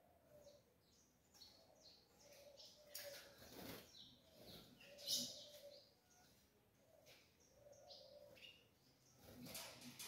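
Faint, short high chirps from caged rufous-collared sparrows (tico-tico), scattered through the quiet, the clearest about five seconds in, with a few soft wing flutters.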